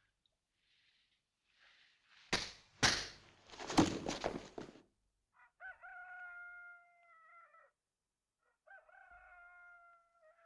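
A film fight: a few sharp blows and the scuffle of a man being knocked down onto a straw-strewn floor, the loudest part. Then a rooster crows twice, each crow a long, steady call that drops away at the end.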